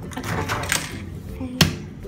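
Handling noise over the first second, then a single sharp knock on a hard surface about one and a half seconds in, the loudest sound.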